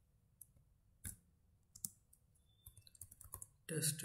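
Computer keyboard keys clicking: a few scattered key presses, then a quick run of keystrokes about three seconds in.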